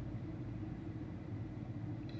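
Steady low rumble inside a car cabin, the vehicle's background noise during a pause in speech.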